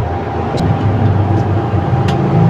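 Low, steady engine rumble of a motor vehicle running, wavering slightly in pitch, with a faint steady tone above it.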